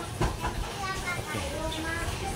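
Faint voices talking in the background, no words made out, over low outdoor noise.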